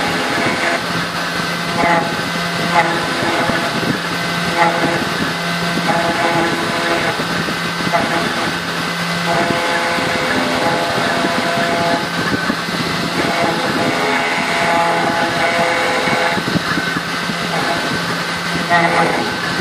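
3040T desktop CNC router engraving aluminium with a 90° engraving bit: the spindle runs at 10,000 rpm with a steady high whine. Over it, the axis motors hum in tones that change pitch and start and stop every second or two as the tool traces the pattern.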